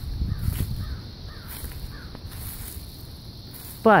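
Woodland ambience: a few faint, short, falling bird calls, like distant crow caws, between about one and two seconds in, over a low rumble.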